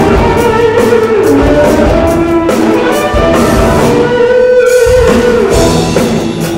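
Live funk rock band playing: electric guitars over a drum kit, loud and continuous.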